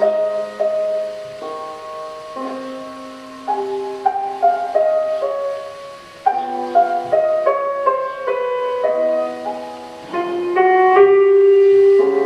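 Slow solo piano music, with notes and chords changing about every second.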